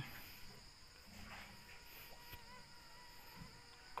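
Faint, steady, high-pitched chirring of insects over an otherwise very quiet outdoor background.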